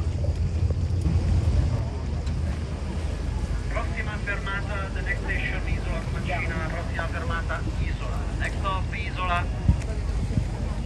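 Steady low rumble of a boat's engine with some wind on the microphone, and people's voices talking from about four seconds in until near the end. A brief knock just before the end.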